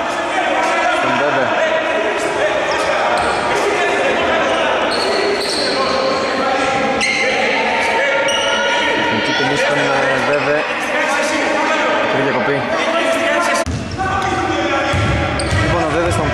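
A basketball being bounced on an indoor court, ringing in a large hall, with players' voices talking over it; a few heavier low thuds come near the end.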